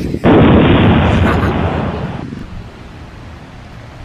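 Explosion-like boom sound effect that starts suddenly about a quarter second in and dies away over about two seconds.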